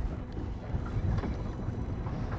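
Steady low rumble of a small boat on the water, wind on the microphone over it, with no distinct events.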